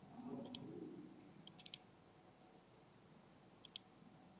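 Computer mouse button clicking in quick groups: a double click about half a second in, a burst of three or four clicks at about a second and a half, and another double click near the end, as files are double-clicked to run them. A faint low sound is heard in the first second.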